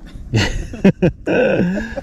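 A man making wordless groaning, gagging noises with his voice, a rough, strained sound in the second half.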